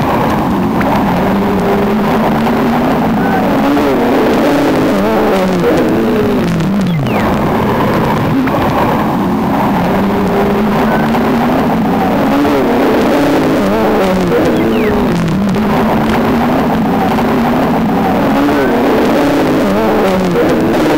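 Ciat-Lonbarde Cocoquantus 2 electronic improvisation: dense layered tones that slide up and down in pitch, with looped phrases coming round again every several seconds.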